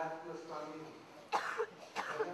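A man's voice trailing off, then a sharp cough about a second and a half in, followed by a smaller one.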